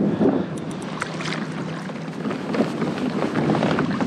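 Wind buffeting the microphone over choppy water splashing against a kayak hull, with a few short knocks and splashes while a redfish is netted alongside.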